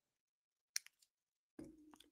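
Near silence: a pause in conversation, with a single faint click a little before the middle and a faint brief rustle near the end.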